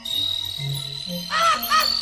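Cartoon film score with a repeating low bass line and a thin high tone slowly rising, with two quick arching squeaky sound effects about a second and a half in.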